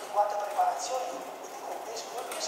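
An indistinct voice with no words made out, along with light clicking.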